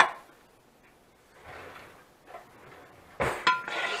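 Kitchenware clinking: a sharp clink right at the start, then about three seconds in a louder knock with a brief metallic ring, as a can and utensil are handled at a roasting pan.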